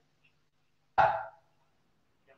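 Near silence, broken once about a second in by a single short, sharp vocal sound that fades within half a second.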